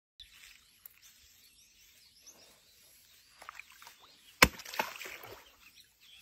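A sharp slap into the water about four and a half seconds in, followed by about a second of splashing, as meat is worked at a pond's surface to draw a crocodile up.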